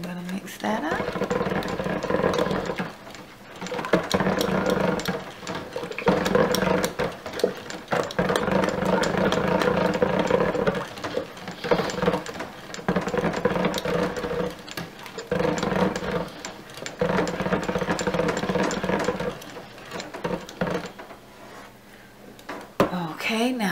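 Stick blender motor running in bursts of a few seconds with brief pauses, about seven in all, its head churning cold process soap batter in a stainless steel pot. It is a steady, even-pitched hum.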